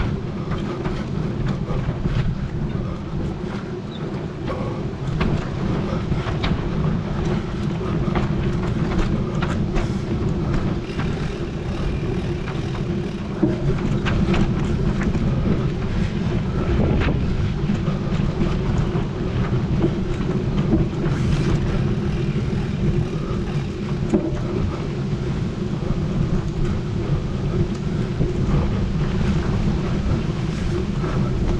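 Mountain bike rolling over a bumpy dirt track at about 13 to 15 km/h, heard from a camera on the rider: a steady low rumble of tyres and wind on the microphone, with frequent short rattles and knocks from the bike over the bumps.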